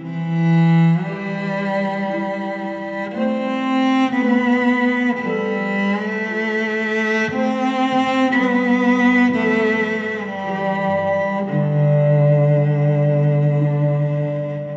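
Slow, tender instrumental ballad on cello and string ensemble: sustained bowed chords that change every second or two, the lines swelling with vibrato.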